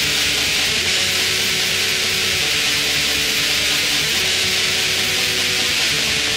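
Raw lo-fi black metal: a harsh, hissy wall of distorted sound at a steady level, with the underlying chord changing about every second and a half.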